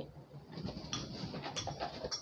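Handling noise from a cardboard box and the camera being moved: a few light knocks and rustles.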